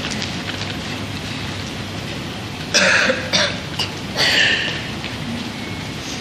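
A woman clearing her throat and coughing, about three short bursts in the middle, over a steady background hiss.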